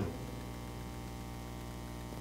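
Steady electrical mains hum: a low, even hum in the sound system's audio, with no other sound over it.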